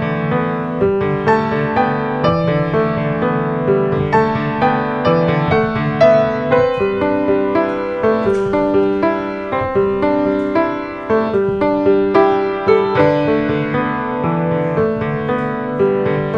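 A grand piano played solo: a continuous flow of notes and chords with no pause.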